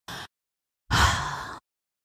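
A woman's breathy sigh: one audible breath lasting under a second, about halfway in, fading as it goes.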